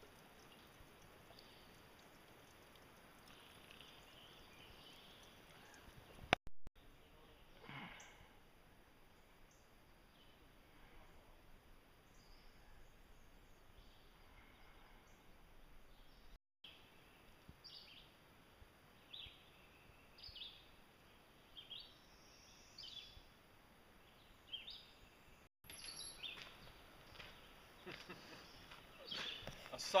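Quiet outdoor ambience: a faint steady hiss with scattered short, high bird chirps in the second half, and a sharp click about six seconds in.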